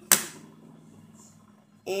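A single sharp knock on a glass tabletop about a tenth of a second in, ringing out briefly.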